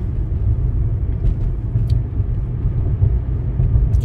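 Steady low rumble of a car driving on the road, heard from inside the cabin: engine and tyre noise.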